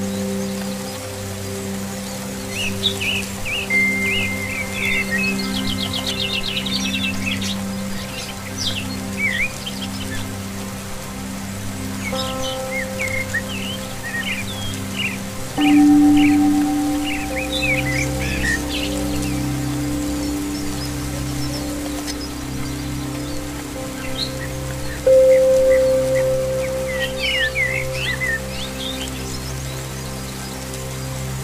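Slow ambient music of long held chords, mixed over steady rain and scattered bursts of small songbird chirps and trills. New chords swell in about halfway through and again near the end.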